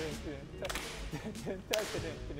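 Bamboo tinikling poles cracking against each other in a few sharp strikes, the loudest near the end, over background music with a voice.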